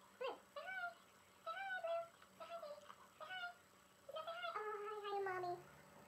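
Queensland heeler (Australian cattle dog) puppies whining and yipping: a run of short high-pitched cries, some dropping sharply in pitch, with one longer drawn-out whine about four and a half seconds in.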